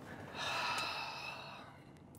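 A person sighing: one breathy exhale, about a second long.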